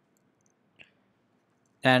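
Near silence, broken by one faint short click a little under a second in; a man starts speaking near the end.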